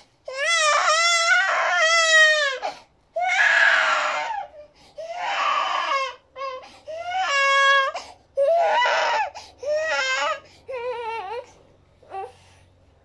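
Baby crying: a long run of loud, high wails broken by gasps and a couple of breathier sobs, the wails growing shorter and weaker toward the end.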